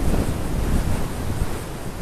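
Wind buffeting the microphone: a steady, rumbling low noise with no motor or propeller whine in it.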